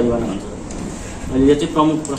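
A man speaking, with a pause of about a second in the middle before he carries on.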